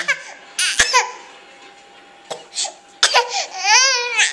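A baby's put-on crying in bursts: a short wail near the start, then a pause, then a long high wail that rises and falls near the end. A single sharp knock comes just before a second in.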